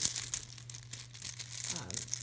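Small plastic number tiles clicking and rattling against each other as a hand rummages in a cloth zipper pouch, with the fabric rustling. A sharp click right at the start is the loudest.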